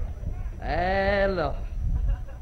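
A person's voice holding one drawn-out vowel for just under a second, its pitch rising and then falling with a slight quiver, over a low background rumble.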